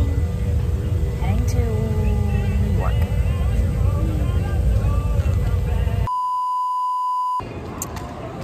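Airliner cabin noise, a steady low rumble, with faint voices over it. About six seconds in, it cuts off abruptly to a steady test-card beep tone lasting just over a second, then gives way to quieter airport-terminal ambience.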